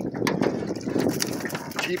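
Water splashing and sloshing in a landing net as a northern pike thrashes in it, with many short, sharp splashes.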